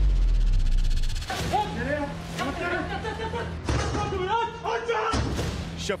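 A deep booming hit with a rumbling tail, like an edited news transition effect, followed by voices over a music bed.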